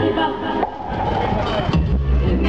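Live band music with the vocal trio's voices. The music thins out for a moment just over half a second in, then the full band comes back in strongly near the end.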